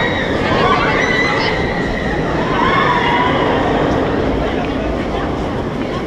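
Loud, steady rumble of a Bolliger & Mabillard inverted roller coaster train running its circuit on nylon wheels, with some voices rising and falling over it.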